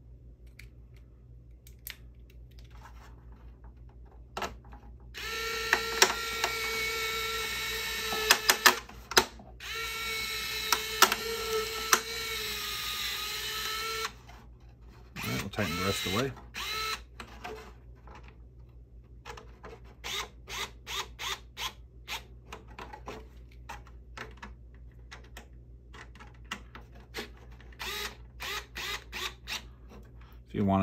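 Cordless electric screwdriver running in two bursts of about four seconds each, driving small screws into a plastic RC truck body, with sharp clicks of handling over it. A run of light clicks and taps follows near the end.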